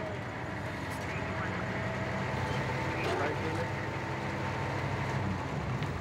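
A steady low hum like idling vehicle engines, with faint indistinct voices about halfway through.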